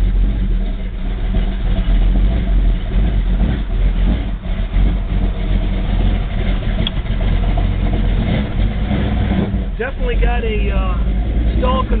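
A modified 454 big-block V8 in a 1970 Chevrolet Chevelle running steadily at low speed, heard from inside the cabin as a loud, low-pitched engine sound. The engine has not yet warmed up.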